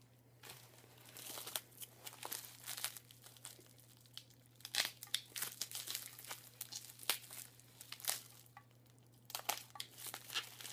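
Packing material being crinkled and torn open by hand to free a drink can: irregular crackles and short rustles with brief pauses, over a steady low hum.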